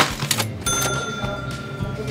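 Cash-register "ka-ching" sound effect, marking a price: a sharp clatter, then a clear bell-like ring held for about a second. Background music plays underneath.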